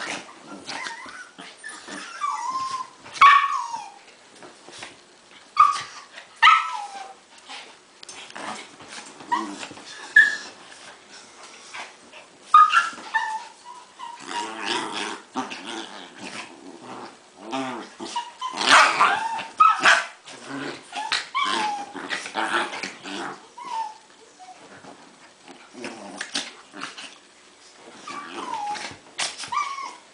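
Two Havanese dogs play-fighting, growling, with many short, high yips and whines that drop in pitch, scattered throughout.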